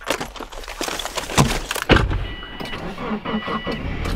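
Car door opening and someone climbing into the driver's seat, with knocks, rustling and a couple of heavy thumps. This is followed by the car's warning chime sounding in short beeps about half a second long, repeating.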